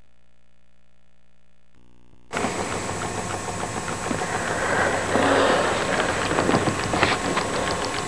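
Near silence for about two seconds, then hiss and a homemade pulsed-stator magnet motor running: the solenoid-driven stator clicks again and again as it is pulsed, with a little slow click in there.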